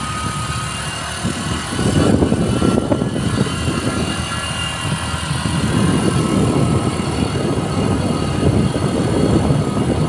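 Wind rushing over the microphone of a moving motorbike, with the motorbike's engine running under it. The rumble gets louder about two seconds in.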